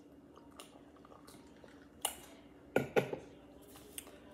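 A person drinking iced orange-pineapple Kool-Aid punch from a stemmed glass: quiet sipping and swallowing, then a few short, sharp sounds about two to three seconds in.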